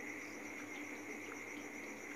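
Faint steady background noise: a constant high-pitched hiss and whine with a low hum beneath, and a few faint ticks.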